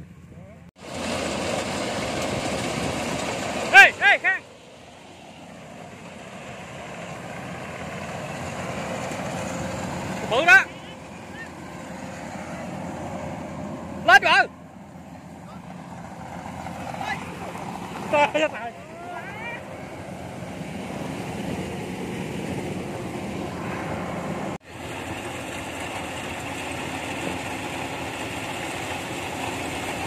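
Rice combine harvester engine running steadily, with several short, loud cries over it about 4, 10, 14 and 18 seconds in.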